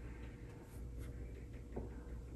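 Faint, short scratchy strokes of a small paintbrush dabbing gouache onto paper, a few strokes in quick succession, over a low steady hum.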